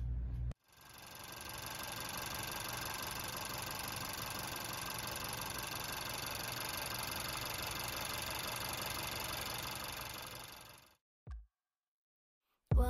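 2015 Honda Fit's 1.5-litre four-cylinder engine idling steadily, heard close up in the open engine bay. It fades in about half a second in and fades out about a second before the end.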